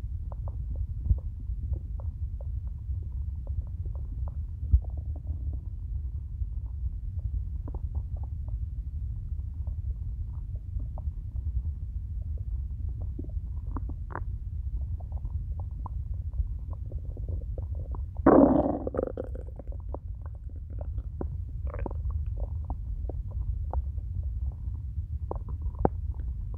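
A hungry human stomach growling and gurgling, recorded close: many small gurgles and clicks over a steady low rumble, with one loud, drawn-out gurgle about eighteen seconds in.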